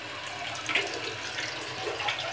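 Toilet flushing: a steady rush of water through the bowl.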